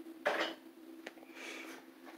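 A steady low hum in the room, with a short rush of breath near the start and one faint click about a second in.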